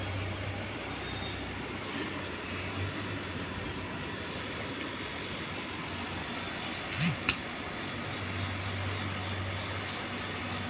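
Steady outdoor background rumble with a low hum. About seven seconds in, a single sharp snip of scissors cutting through an okra stem.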